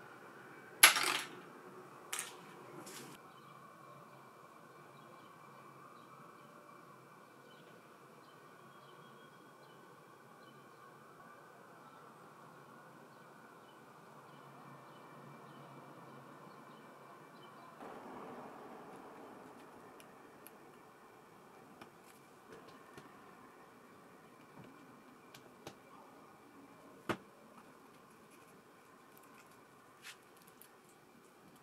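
Small hard clicks and taps from handling laptop parts, the power button boards and the plastic and metal chassis. One sharp click comes about a second in and two fainter ones soon after, then scattered light taps and a single sharp click near the end, over a faint steady hum.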